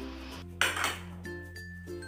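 The clear plastic cup of a small food chopper being handled on a counter, with one short clatter about half a second in. Soft background music plays throughout.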